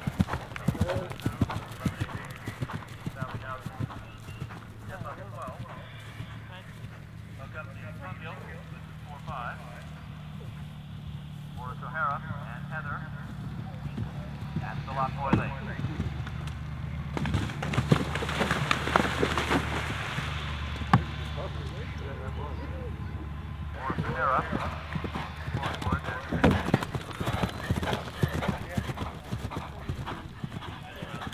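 Horses galloping on turf, hooves pounding in quick runs. In the middle, a horse gallops through a water jump and splashes heavily for a few seconds.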